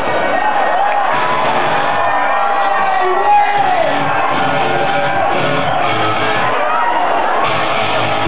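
Loud dance music over a club sound system, with a crowd shouting and whooping over it.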